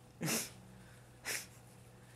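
Two short, breathy bursts of quiet laughter from a person, about a second apart, the first the louder.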